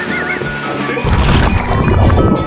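Background music, with a loud water splash from about a second in as a rider plunges off a towed banana boat into the lake.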